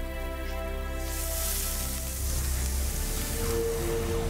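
Episode soundtrack: sustained score music, then about a second in a loud hiss of burning fire rises over it with a low rumble, as a character's hand catches fire around the stone she is holding.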